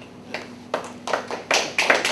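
Hand clapping starting up: a few scattered claps about a third of a second in, coming faster and louder into applause toward the end.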